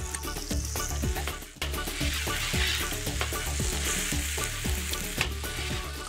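Sofrito sizzling in olive oil in a hot paella pan as bomba rice is poured in and stirred, with many small ticks and scrapes over a steady sizzle.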